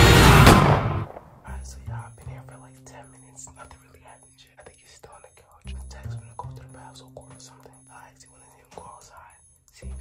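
Music playing loudly, cutting off about a second in, then a person whispering close to the microphone over a steady low hum.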